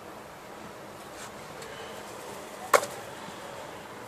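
A single sharp knock a little after halfway, with a short ring after it, over a faint steady outdoor background.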